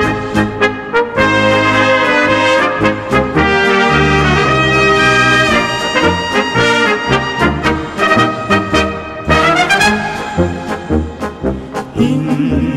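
Bohemian-style brass band playing instrumentally: brass melody over a regular beat of bass and accompaniment chords. About nine seconds in there is a rising run, and the last couple of seconds are quieter.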